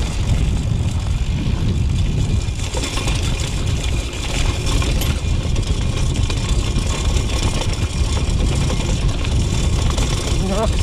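Steady wind rumble on an action-camera microphone as a BMX rolls down a dry, rocky dirt singletrack. The tyres and frame rattle over the rough surface.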